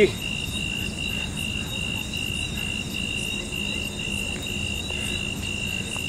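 Crickets chirping in a steady high-pitched pulse, about three chirps a second.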